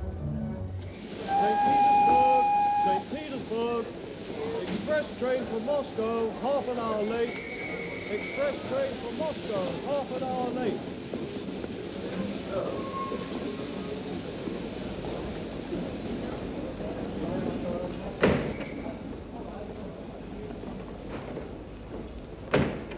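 Steam locomotive blowing off steam in a station, with a whistle held for about two seconds starting a second in and a shorter, higher whistle around eight seconds in. A crowd's voices chatter through the first half, and a single bang sounds near the end.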